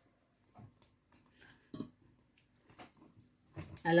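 Mostly quiet, with a few soft crunches and clicks of someone chewing crunchy baked broccoli, the clearest about two seconds in.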